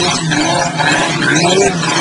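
Quad bike engine revving hard, its pitch rising and falling, as the wheels spin in loose sand with a steady noisy rush.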